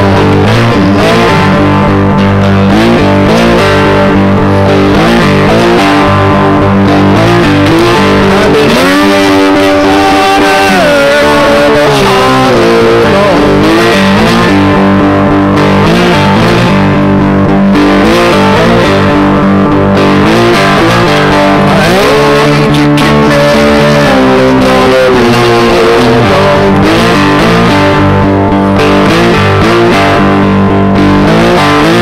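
Amplified slide guitar played with a metal slide through distortion, a country-blues piece with notes gliding up and down in pitch between sustained tones.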